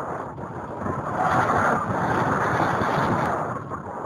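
Rushing airflow buffeting the microphone of a camera mounted on a radio-controlled glider in flight in strong wind, swelling louder about a second in and easing off near the end.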